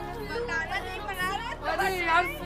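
Several people's voices chattering and calling out, over faint background music.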